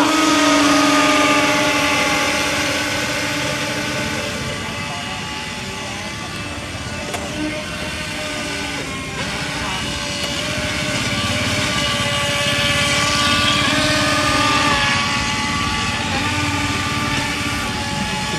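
Twin electric motors of a small radio-controlled speedboat whining steadily at speed as it runs across the water. The whine is loudest at the start, fades a little as the boat moves off, and grows louder again about twelve to fourteen seconds in.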